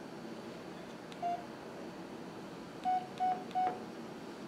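Samsung Gusto 3 flip phone key tones as its navigation key is pressed: short identical beeps, each with a faint click. One comes about a second in, then three quick ones near the end as the menu scrolls.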